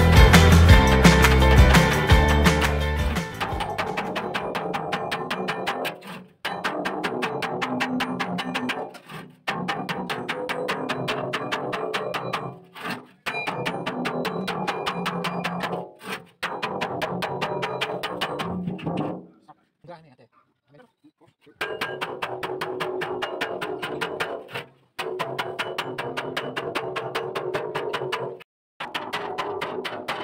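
Music at first, then rapid, steady hammer blows on a chisel cutting through the wall of a steel oil drum, the drum ringing with each strike. The blows come in several stretches of a few seconds, broken by short gaps.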